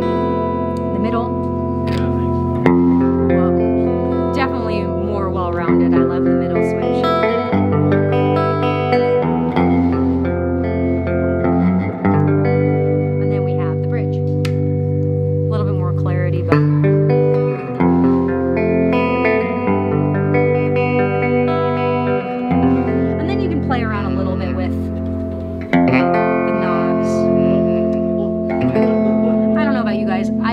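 1956 Silvertone U2 electric guitar played through an amp with some reverb: ringing chords over a picked low bass line, on a pickup setting other than the neck pickup, to show how the switch positions differ in tone.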